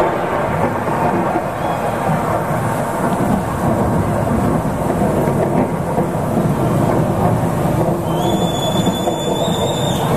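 Loud, dense wash of live rock concert sound in a large arena, the band and crowd blurred together into a distorted roar. A high steady tone, like feedback or a whistle, sounds for about the last two seconds.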